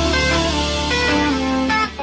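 Live band music with no singing: an electric guitar plays a stepping melodic line over a steady low bass. The sound dips briefly near the end.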